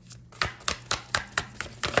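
Tarot deck being shuffled by hand: a quick run of sharp card slaps, about five a second.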